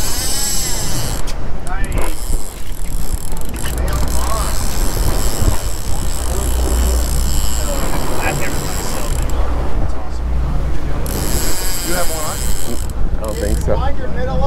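Big-game conventional fishing reel clicking and whirring under load with a hooked sailfish on the line, its high mechanical buzz cutting out briefly about nine seconds in and again near the end, over a steady rumble of wind, water and the boat.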